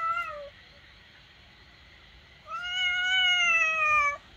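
A house cat meowing twice: a short meow at the start, then a long, drawn-out meow beginning about two and a half seconds in.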